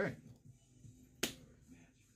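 A single sharp hand clap about a second in.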